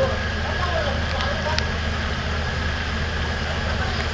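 Steady low rumble of Nile cruise ship diesel engines running while the ships moor alongside each other, with indistinct voices in the background and a single sharp click about a second and a half in.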